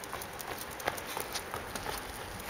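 Footsteps on paving stones as a person and a young dog walk together, a handful of light, irregular clicks.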